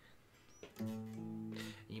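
Electric guitar: one barre chord strummed about a second in, its notes ringing out clean and steady for about a second before being stopped.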